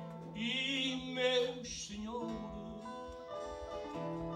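A man singing a line of Portuguese cantoria with a wide vibrato over plucked guitar accompaniment. The voice drops out about two seconds in and the guitar carries on alone.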